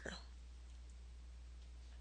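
Near silence: a faint steady low hum with light hiss from the recording, between spoken lines.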